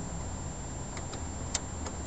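A few light metallic clicks, about four, from a lockpick and tension wrench working in a just-picked door lock cylinder; the sharpest comes about one and a half seconds in.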